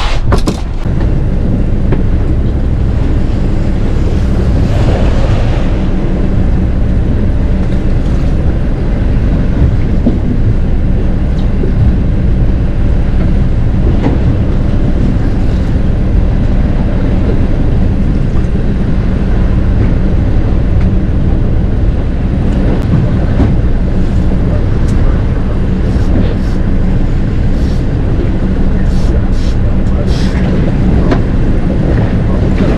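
Steady rumble of wind buffeting the microphone on a small boat at sea, with a boat engine's hum running steadily underneath.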